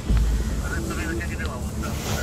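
Men's voices talking in the background over a steady low rumble, recorded on a phone microphone.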